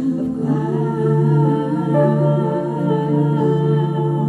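Women's voices singing long held notes in layered vocal harmony, a slowly sustained chord, with a higher note joining about halfway through.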